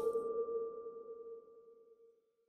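A single chime-like electronic tone from an animated logo sting, ringing out and fading away over about a second and a half.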